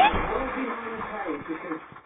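Faint speech of a man's voice coming from a television's speaker, fading away over the two seconds.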